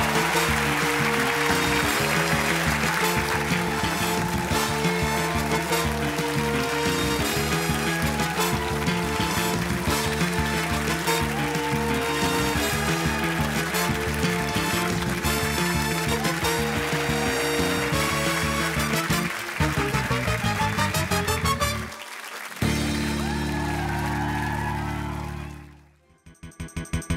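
Closing theme music with a steady beat, over applause that fades in the first few seconds. A little after 22 s the music breaks briefly, then ends on a held chord that stops suddenly.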